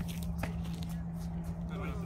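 A basketball bouncing once on a concrete court about half a second in, over a steady low hum, with faint voices from the players near the end.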